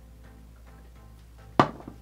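Soft plucked-string background music, with one sharp knock about one and a half seconds in: the cordless curling wand being set down upright on a table.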